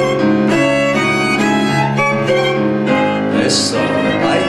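Live tango ensemble playing an instrumental passage, violin leading over piano.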